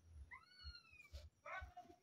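A faint animal call: a single short whine that rises and then falls in pitch, lasting under a second, about a third of a second in.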